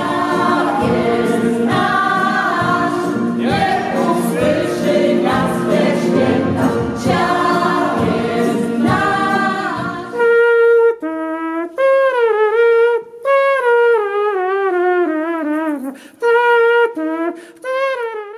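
A mixed choir sings a Christmas song over a brass band. About ten seconds in, the band and choir drop out and a single voice carries on alone, unaccompanied, in short wavering phrases that slide downward.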